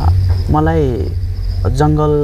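Talking voices, with a cricket's high, steady chirping in the background.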